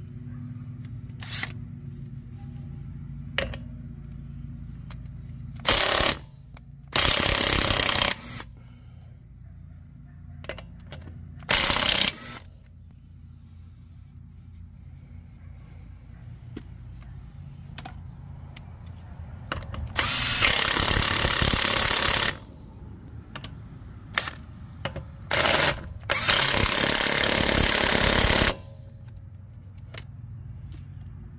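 Snap-on cordless impact wrench hammering on a truck's lug nuts in about seven short runs, the longest about two seconds, starting and stopping abruptly.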